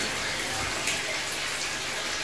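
Steady rush of running, trickling water, like a small stream or flowing outlet.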